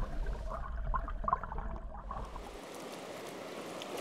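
River current heard underwater: a muffled gurgling rush with a heavy low rumble. About two and a half seconds in it gives way to the steady, even hiss of a river running over shallows.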